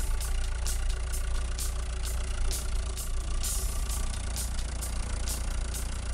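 Vehicle engine idling: a steady low rumble, with faint irregular clicks, about two or three a second, over it.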